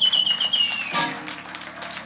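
Electric guitar holding a high note with fast vibrato, which bends down and dies away about a second in. Quieter stage noise with light taps follows.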